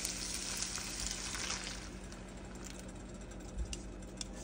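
Ground sausage and sun-dried tomatoes sizzling in a frying pan. About two seconds in the sizzle dies down as cold heavy cream is poured in over them. A soft knock comes near the end.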